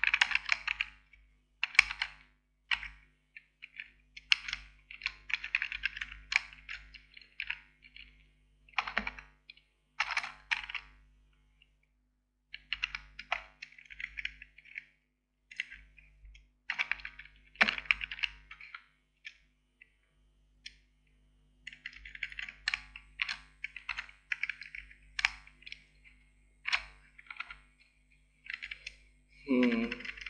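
Typing on a computer keyboard: bursts of rapid keystroke clicks separated by short pauses of a second or so.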